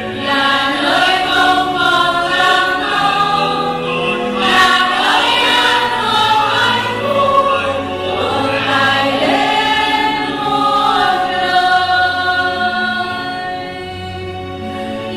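Church choir singing a slow hymn in held notes, with steady low accompanying notes underneath.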